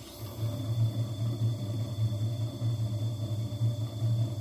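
Faceting machine running: a steady low motor hum, with an uneven grinding noise from a gemstone held against the spinning lap.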